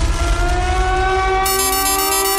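Electronic dance music in a hardcore DJ mix at a breakdown: the pounding beat drops away and a chord of synth tones glides slowly upward in pitch, like a siren. About one and a half seconds in, a fast, even, high ticking pattern enters.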